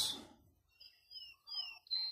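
Two short, faint bird chirps, each falling in pitch, about a second in, with a light click or two from the multitool as its saw blade is unfolded.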